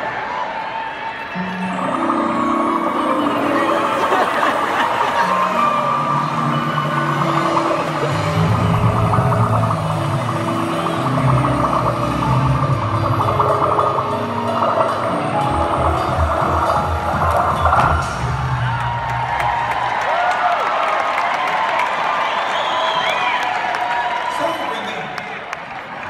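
Live band music in an arena, led by a bass line stepping from note to note, over a steady wash of audience noise. The bass line stops about four seconds before the end, leaving the audience noise.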